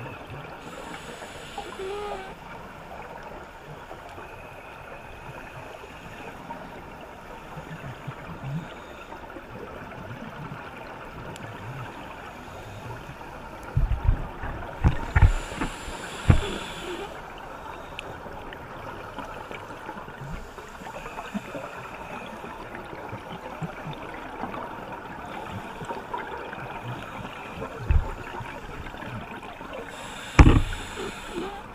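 Underwater ambience picked up by a diver's camera: a steady hiss and crackle, broken a few times by gurgling bursts of exhaled bubbles from a scuba regulator, loudest about halfway through and with a short burst near the end.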